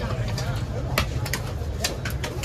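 A large knife striking and cutting through a big trevally's head on a wooden chopping block: a series of sharp, irregular knocks, over background voices.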